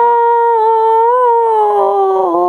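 A woman's singing voice holding one long note at the end of a line of a Gujarati devotional song (bhajan), with a slight waver in the middle and a small dip in pitch near the end.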